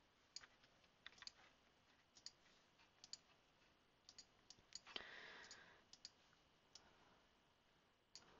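Faint, irregular clicks of a computer mouse, with a brief soft rush of noise about five seconds in.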